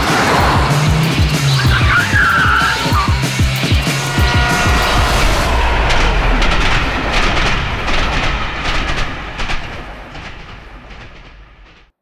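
Trailer music with a fast pulsing beat, a high screech a couple of seconds in, then the steady low rumble of a train with rapid clicks of wheels over rails. Everything fades out over the last few seconds.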